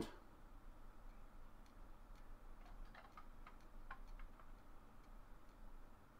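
Faint, irregular clicks of a Yaesu FT-817 transceiver's detented selector knob being turned by hand to step the frequency up, mostly in the middle of an otherwise near-silent stretch.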